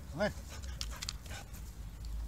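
A dog gives one short yelp that rises and falls in pitch, followed by a few soft clicks and rustles.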